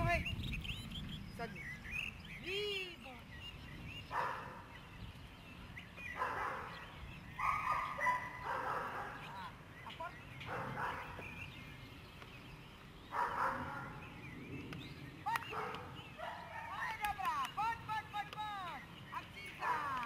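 German Shepherd dog whining and yipping in quick, high calls, one run near the start and another near the end, with short louder bursts in between.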